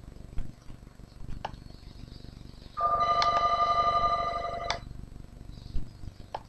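A steady electronic tone of several pitches at once, lasting about two seconds from a little before the middle, with a few faint clicks before and after.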